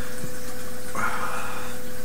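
Steady background hiss with a constant hum, and a short breathy sound about a second in.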